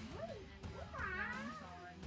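A high voice gliding up and down in pitch over background music, loudest about a second in.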